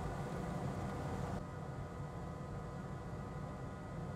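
Steady low hum with a hiss above it and a few faint steady tones; the hiss drops abruptly about a second and a half in, and no distinct event stands out.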